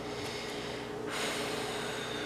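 A long breathy exhale, like a sigh, starting about halfway through, over a steady low hum.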